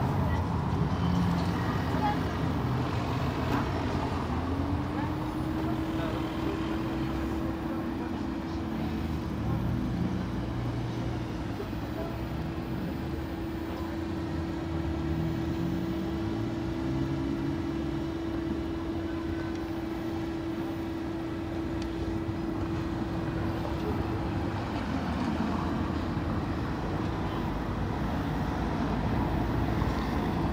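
Town-centre traffic: car engines and road noise around a square, with one steady engine hum that rises in pitch about four seconds in, holds for some twenty seconds and falls away near the end.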